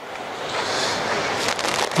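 Steady rushing noise of wind on the microphone and ocean surf, with a brief crackle near the end.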